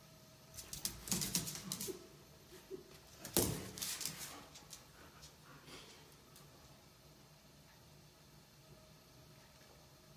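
A husky and a cat scuffling at play on a tiled floor: a flurry of clicks and knocks in the first half, the loudest about three and a half seconds in.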